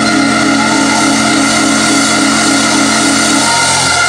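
Organ holding one loud, sustained full chord, its bass notes dropping out just before the end.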